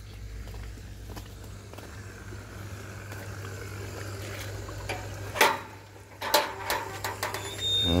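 Small electric water pump motor humming steadily while it pumps water to flush out a tank. A metal gate clanks a few times a little past halfway as it is opened.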